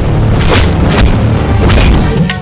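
Loud trailer soundtrack: dramatic music with deep booming hits and a few sharp impacts, about half a second in, at one second, and near the end.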